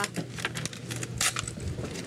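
Jewelry and plastic property bags being handled on a counter: a few short rustles and light clinks, the most distinct a little past halfway.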